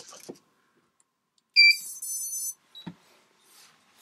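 Miniquad's electronics giving their power-up beeps as the battery is connected: a short high beep about one and a half seconds in, then a buzzier electronic tone lasting under a second.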